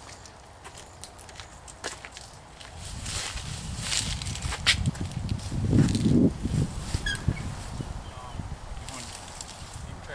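Footsteps and rustling on leaf-strewn ground and concrete, then clicks from the door of an old car being unlatched and pulled open.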